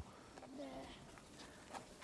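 Faint children's voices in an otherwise quiet pause, with a single small click near the end.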